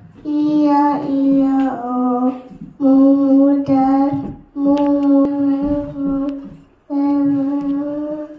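A young boy singing unaccompanied, in long held notes, phrase by phrase with short pauses for breath.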